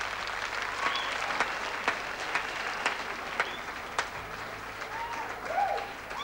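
Audience applauding after the music stops, with a few short calls or whistles above the clapping. The applause eases off near the end.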